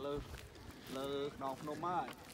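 People talking in short bursts: only speech, no other clear sound.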